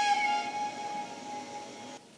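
Flute music ending: a held flute note dips slightly in pitch just after the start and fades away over about two seconds.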